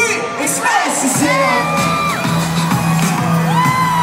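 Live pop music played loud over a concert PA, heard from within the audience, with the crowd whooping and cheering.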